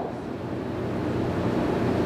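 Steady, even background noise in the room with a faint low hum.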